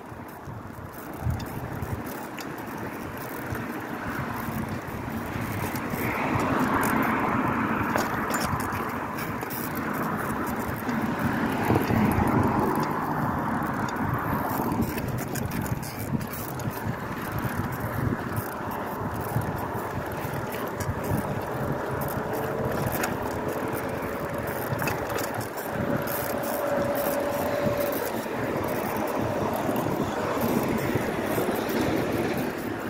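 Bicycle ridden along a concrete sidewalk: a steady rush of wind and tyre noise, broken by frequent small knocks and rattles. The noise swells for several seconds in the first half.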